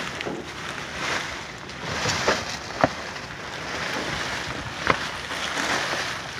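Plastic bags and plastic wrap rustling and crinkling as hands rummage through a dumpster full of them, swelling and fading, with a few sharp crackles.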